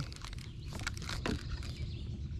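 Faint, irregular small clicks and rustles of a spinning reel and fishing line being handled, over a low steady rumble.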